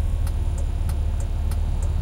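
Steady low rumble of a car, heard from inside, with faint light ticks over it.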